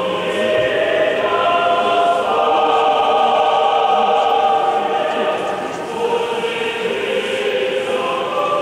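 Church choir singing without instruments in long held chords that shift every second or two, in the style of Russian Orthodox liturgical singing.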